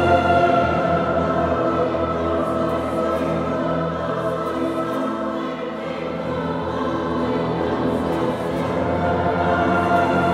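Choir and symphony orchestra playing slow, sustained chords, with the choir singing over the orchestra.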